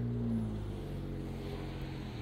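Low, steady hum of a motor vehicle engine running, with its pitch dipping slightly and easing off about half a second in.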